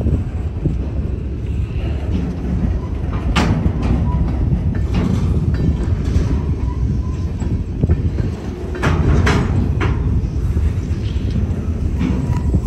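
Freight train hopper cars rolling past over a road crossing: a steady low rumble of steel wheels on rail, broken by sharp clacks as wheels pass rail joints. The clacks come in a cluster about three and a half seconds in and again about nine seconds in.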